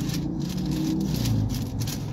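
Bible pages being leafed through by hand, a series of soft papery rustles, over a low steady hum inside a car's cabin.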